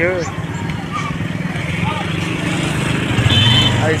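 Motorcycle engine running steadily under the rider through busy street traffic, with a short horn toot near the end.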